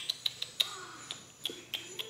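About nine soft, sharp mouth clicks at irregular spacing, from a woman's lips and tongue as she pauses to think of a word. They come quickest in the first half-second, then thin out.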